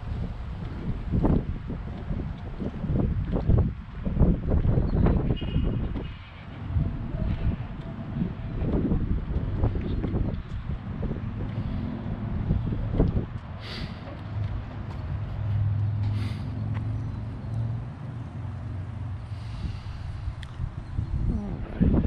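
Wind gusting on the microphone in uneven low rumbles, with a steady low engine hum coming in about halfway through.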